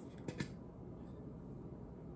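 Two light clicks about a quarter second apart near the start as a small metal candle tin and its lid are handled, then quiet room tone.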